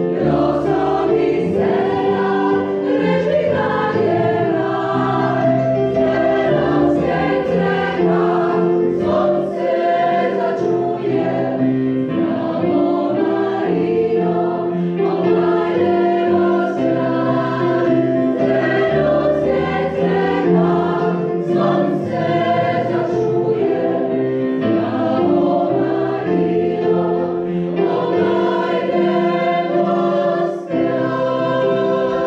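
Choral music: a choir singing in sustained, held chords that change every second or so.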